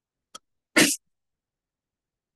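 A single short, sharp burst of noise just under a second in, lasting about a fifth of a second, with a faint click shortly before it.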